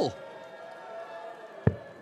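A single dart strikes the bristle dartboard with one short, sharp thud about one and a half seconds in, over a low, steady hall background.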